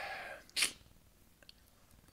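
A man's breathy exhale fading out, then a short, sharp sniff through the nose a little over half a second in, followed by a faint click.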